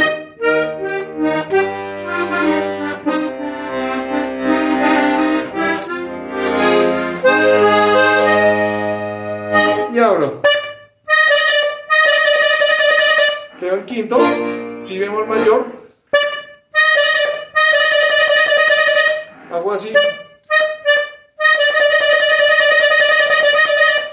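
Hohner Corona III diatonic button accordion playing a vallenato introduction: about ten seconds of a moving treble line over bass-button notes, then three long held chords. Short bits of a man's voice come in the gaps between the chords.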